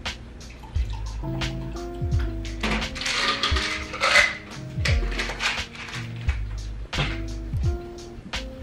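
Background music with a steady beat. From about three to four seconds in, water is poured from a filter pitcher into a mug.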